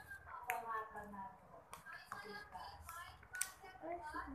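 Quiet, indistinct talking, with three short sharp clicks spread through it.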